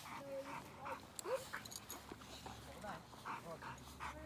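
A Boxer dog panting in quick breaths, about three a second, and whining in short rising cries while held back on a leash, worked up before being sent on a bite.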